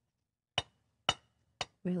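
A knife clinking against a white ceramic baking dish three times, about half a second apart, while a piece of pumpkin loaf is cut out of it.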